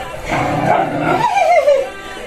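A dog whining loudly in a wavering cry that slides down in pitch during its second half and stops just before the end.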